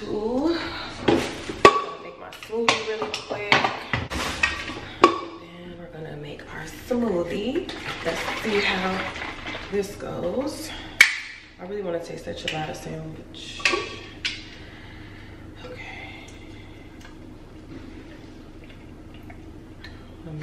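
Dishes and plastic and glass containers knocking and clinking as they are handled and set down on a kitchen counter, with a voice at times; the clatter thins out after about 14 seconds.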